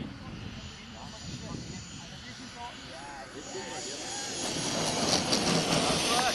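Turbine of a radio-controlled model jet (a CARF Canadair Tutor), a steady rushing whine that grows louder over the last couple of seconds as the model comes in low to land on grass.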